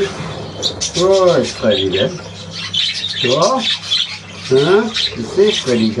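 Many budgerigars chattering and squawking without a break. About five short, wordless rising-and-falling sounds from a man's voice come at intervals over it.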